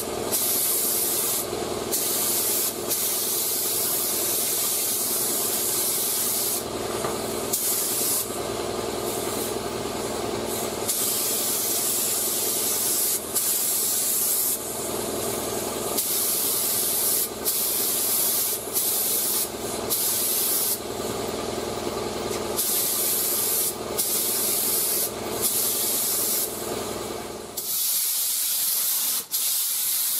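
Air spray gun with a 1.4 mm tip spraying base coat paint: a steady air hiss that cuts off and comes back many times as the trigger is let go and pulled again between passes, over a steady lower hum.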